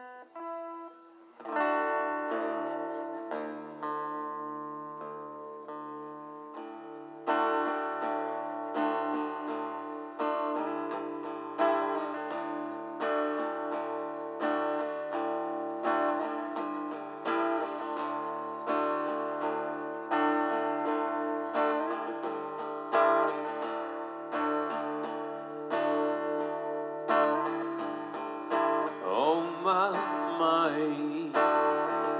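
Solo acoustic guitar: a few single plucked notes, then ringing chords from about a second and a half in, struck in a steady rhythm. A man's singing voice comes in near the end.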